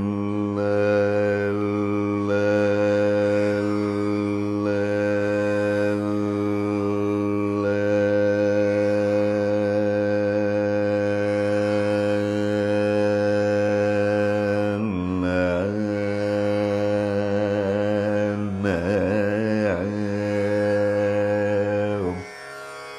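A male Carnatic vocalist sings one long held note in raga Saveri over a steady drone. The pitch swings in ornamented gamakas about two-thirds of the way in and again near the end.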